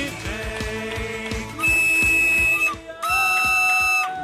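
Short musical sting with a beat, then a small flute playing long, loud, high sustained notes from about one and a half seconds in, with a brief break near the end.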